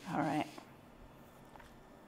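A woman's brief vocal sound, a short pitched half-second noise at the start, made as she rubs her itchy face.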